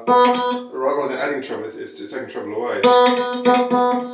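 Electric guitar played through a small Vox AC15-style valve combo with a Celestion speaker. Two ringing chords, one at the start and one nearly three seconds in, with quicker picked notes between.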